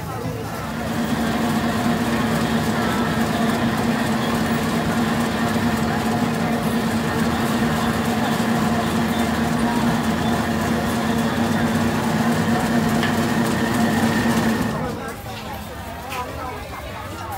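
Electric motor of a fish-ball forming machine running with a steady hum, which stops near the end.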